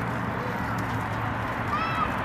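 Outdoor ambience: a steady background noise with a low hum, and a short high-pitched call near the end.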